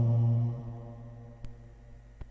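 A man's voice chanting a Zoroastrian prayer, holding one low note that fades out about half a second in, followed by a quiet pause with a faint click.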